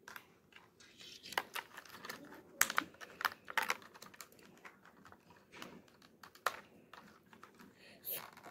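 Scissors snipping the clear plastic ties that hold a doll in its packaging, with the plastic tray being handled: a string of sharp, irregular clicks and snips.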